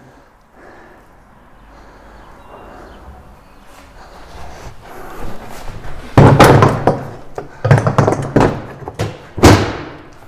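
A series of loud, hollow thunks as a ride-on mower's spring-loaded rear discharge flap and plastic body parts are handled and the flap falls shut. Quieter handling noise comes first, and the thunks fall in the second half.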